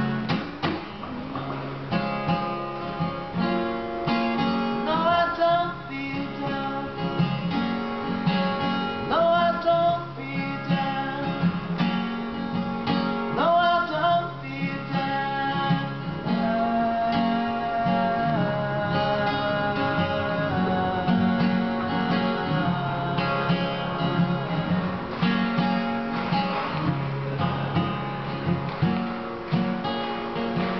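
Acoustic guitar strummed in a steady chord rhythm, with a man's voice singing over it in several phrases.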